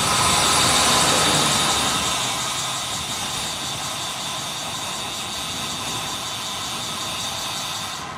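Wind rushing over the camera microphone, with tyre noise on asphalt, from a bicycle descending fast. It is loudest in the first couple of seconds, then eases off and stays steady as the bike slows into a bend.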